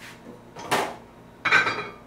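Two metal clanks about a second apart, the second ringing briefly: the steel plate and parts of a meat grinder's head being taken off and handled.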